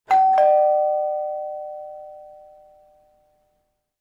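A two-note ding-dong chime, like a door chime: a higher note, then a lower note about a third of a second later, both ringing out and fading away over about three seconds.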